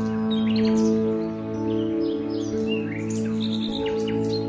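Calm piano music with long, held notes, and birds chirping and tweeting over it in short calls throughout.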